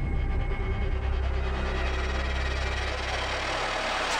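Suspense background score: a low, steady rumbling drone that swells into a rising whoosh near the end, building to a hit.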